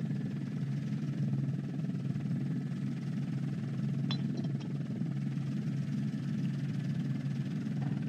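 Steady low drone of an aircraft's engine and cabin noise in aerial footage, with a constant low hum throughout and a faint click about four seconds in.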